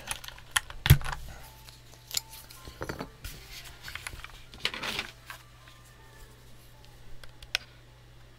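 Plastic clicks and knocks from handling a Mistel MD600 split keyboard half and pulling a keycap off it with a wire keycap puller, with a louder thump about a second in and a short scraping rattle around five seconds in.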